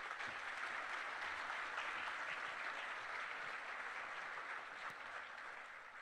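Audience applauding, dying away gradually toward the end.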